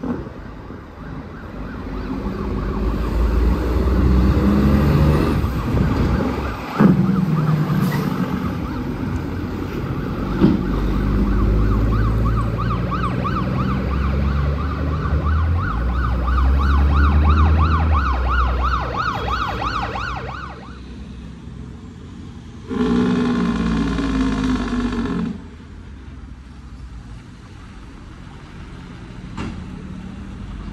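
Heavy diesel tractor-trailer engines running loud and low as the trucks pull through, with a fast warbling tone over them through the middle. A loud pitched blast of about two and a half seconds follows later.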